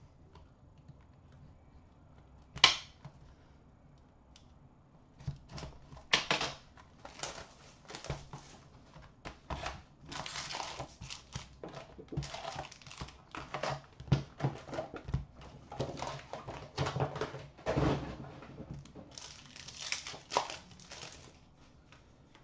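A sealed box of hockey trading cards being unwrapped and its foil packs torn open and the cards handled: one sharp snap a few seconds in, then a busy, irregular run of crinkling and tearing from about five seconds on.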